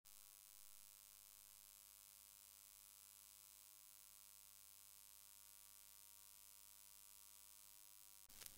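Near silence: a faint, steady electrical hum with hiss.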